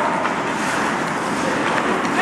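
Steady rushing noise of an indoor ice rink during hockey practice, with skate blades scraping and carving the ice.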